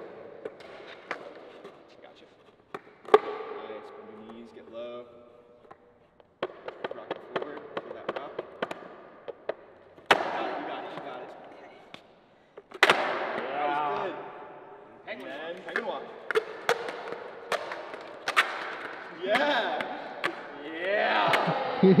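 Skateboards clacking and knocking on a concrete floor during freestyle tricks: sharp wood-and-wheel knocks as the boards are rolled onto their edges into a rail stand and stepped back down onto their wheels. Voices are heard in between.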